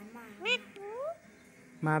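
Alexandrine parakeet giving two short, squeaky, rising calls in the first second, the second one a clear upward glide.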